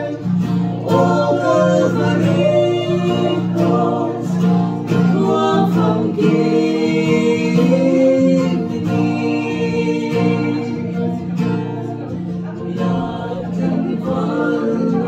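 Two women singing a song together to an acoustic guitar strummed in a steady rhythm.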